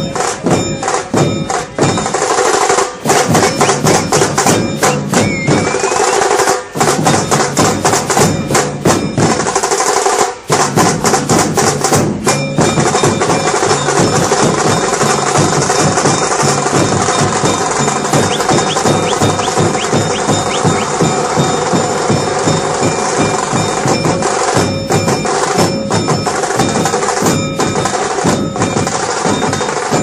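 A street procession drum band playing loud, fast, continuous drumming, with rapid sharp strikes and a few steady held tones over it.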